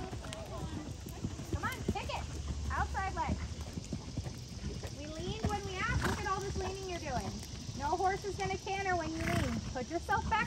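Soft hoofbeats of horses cantering on an arena's sand footing, with voices talking over them.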